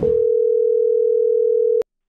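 Telephone ringback tone on an outgoing call: one steady tone lasting nearly two seconds, ending in a click.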